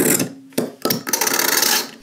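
A razor blade scraping along the metal bottom edge of a smartphone frame in two strokes: a short one right at the start, then a longer, gritty one of about a second, with a small click between them.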